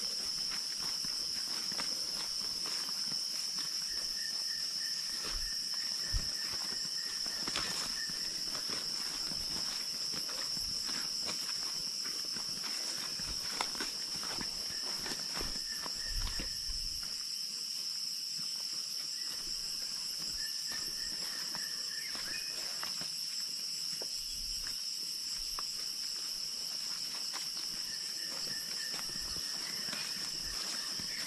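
Steady high-pitched drone of forest insects, with a fainter second tone that comes and goes several times. Footsteps on a leafy dirt trail, with scattered crunches and soft thumps.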